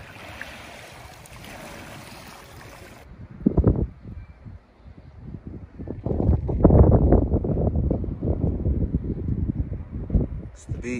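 Calm sea lapping gently on a pebble shore, a soft, even wash, for about three seconds. Then wind buffeting the microphone in loud, low gusts: one short gust about half a second later, and steadier, heavier buffeting from about six seconds in.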